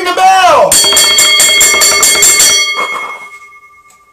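Wrestling ring bell rung rapidly, about six strikes a second for two seconds, then ringing out: the bell that ends the match.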